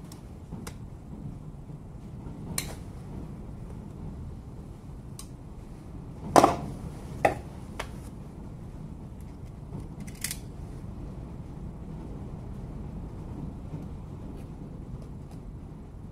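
Scattered small metal clicks and clinks of pliers and a screwdriver working at a cordless angle grinder's carbon-brush housing, prying at a brush fused stuck inside. About seven separate taps, with the loudest knock about six seconds in.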